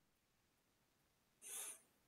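Near silence in a pause between speakers, with one brief, faint high-pitched hiss about one and a half seconds in.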